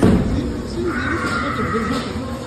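Haunted dark-ride soundtrack at an animatronic electric-chair scene: a loud crash-like burst at the start, then a long high-pitched wail held for about a second, over a steady low rumble.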